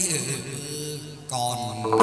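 Chầu văn ritual music: a chanted vocal line with a bending pitch over string accompaniment, a stronger new note entering about a second and a half in.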